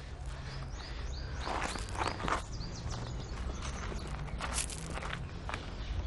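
Footsteps scuffing along a path in a few uneven strokes, loudest about two seconds in and again near the end. About a second in, a small bird gives a quick run of repeated high chirps.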